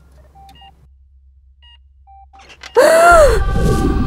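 A few short electronic beeps from hospital patient monitors sound at two pitches over a quiet room hum. About three seconds in, a loud voice calls out, its pitch rising and falling, over a low rumble.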